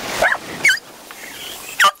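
A dog giving three short, high yips, two close together near the start and one near the end: excited barking during a game of fetch.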